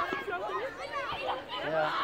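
Chatter of several voices talking and calling over one another, some of them high-pitched children's voices.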